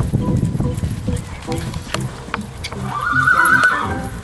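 A horse whinnies once near the end, a call of about a second that rises, holds and drops, over music playing in the background.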